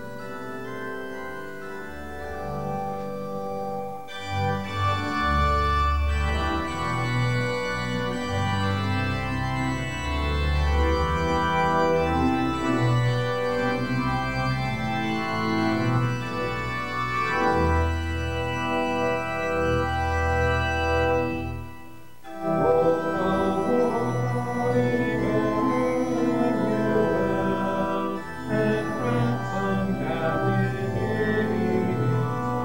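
Organ playing a hymn tune in sustained chords over deep pedal bass notes, with a short break between phrases about three-quarters of the way through.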